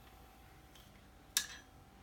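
A single sharp little click about one and a half seconds in, from the sewing machine's metal bobbin being taken out of its bobbin case.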